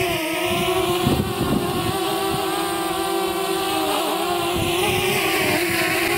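DJI Mavic Mini quadcopter hovering close by as it is brought down to land, its propellers whining steadily at one pitch, with wind buffeting the microphone underneath.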